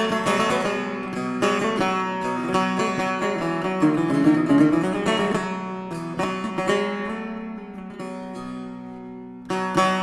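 Solo setar, a Persian long-necked lute, improvising in the Shur mode. A strong plucked stroke opens a run of quick notes over a ringing lower string. The melody climbs in the middle, then rings away before a new stroke just before the end.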